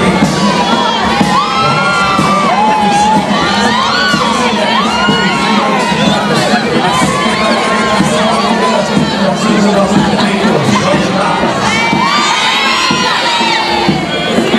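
Many children shouting and cheering at once, high voices overlapping with crowd noise, over a steady low hum.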